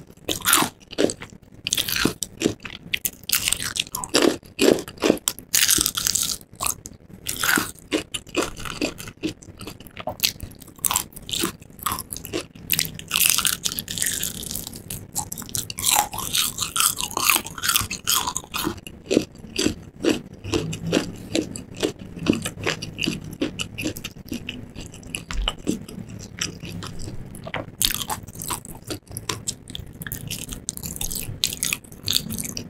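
Close-miked biting and chewing of crispy breaded fried chicken, the crust crackling in quick crunches. The crunching is sharpest and densest in the first half, then turns into softer chewing.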